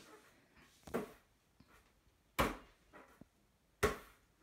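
A basketball thudding three times, about a second and a half apart, between quiet stretches in a small room.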